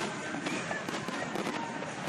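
Fireworks display: aerial shells bursting overhead in a dense, continuous run of bangs and crackles.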